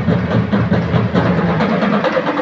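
A school marching band playing: melodicas carry the tune over marching drums and mallet keyboards, with a steady pulsing beat and no break.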